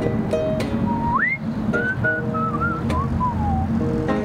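Acoustic guitar fingerpicked, with a whistled melody over it for a few seconds in the middle that swoops up, wavers and falls away.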